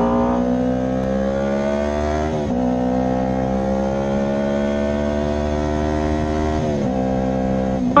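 Yamaha YZF-R3's parallel-twin engine accelerating: the revs climb steadily, drop sharply at an upshift about two and a half seconds in, climb again, then drop at another upshift near the end.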